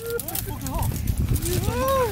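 Drawn-out, wavering vocal calls that slide up and down in pitch: a few short ones, then one long rising-and-falling call near the end.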